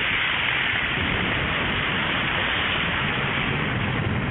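A loud, steady hiss of rain-like noise, even throughout, with no pitch or rhythm.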